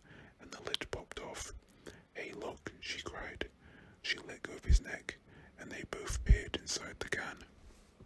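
A man whispering close to the microphone, with two low thumps near the end.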